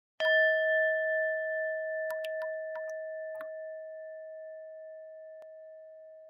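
Intro logo sound effect: a single bell-like chime struck once just after the start, ringing out and fading slowly over several seconds. A few short, high tinkling notes sound about two to three and a half seconds in.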